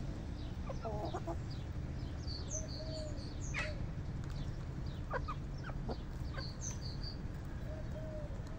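Domestic hens clucking softly as they forage, with a few low, short clucks and scattered brief high chirps.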